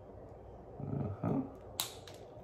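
A single sharp snap near the end from the spring-loaded steel jaws of a self-adjusting wire stripper closing on a wire to cut it.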